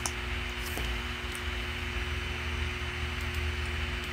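Steady room noise: an even hiss with a low, steady hum beneath it, and a few faint clicks scattered through.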